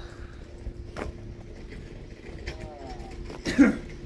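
A man coughs once near the end, over a faint steady hum.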